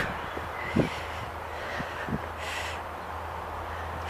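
Quiet outdoor background with a low steady rumble, a few faint knocks, and a brief hiss about two and a half seconds in.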